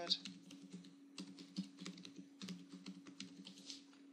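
Typing on a computer keyboard: a quick, irregular run of keystrokes as a password is typed in, over a faint steady hum.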